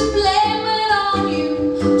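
A woman singing live with a small acoustic band, an upright bass among the instruments; her voice wavers on a held line.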